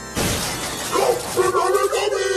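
A sudden crash sound effect, like something shattering, cuts off soft keyboard music just after the start, and its noise dies away over about a second. From about a second in, a voice calls out over it.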